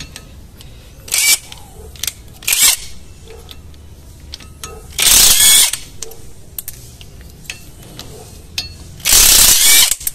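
Cordless ATVERCE power driver spinning a bit in short bursts, loosening the retaining screws that hold the front brake disc to the wheel hub. Two brief bursts come early, then two longer runs of about half a second each, near the middle and near the end.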